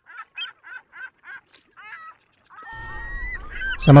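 Birds calling: a quick run of short calls, about four a second, for the first two seconds. Near the end, longer gliding calls come in over a steady background hiss.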